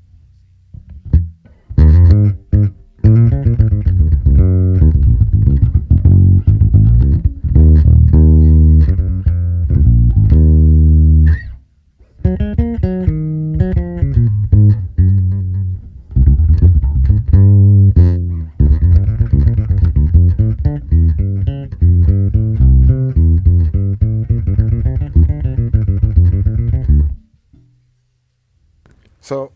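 Electric bass guitar played through a Zoom B6's Ampeg SVT amp model with just the preamp, no SVT circuit engaged: a run of plucked bass lines with a deep low end. It pauses briefly about 11 seconds in and stops a second before the end.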